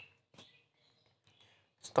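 A couple of faint, short clicks in near quiet, then a man starts speaking near the end.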